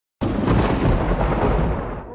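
Thunder sound effect: a loud rumbling crash that breaks in suddenly after a brief dropout and rolls on, easing slightly near the end.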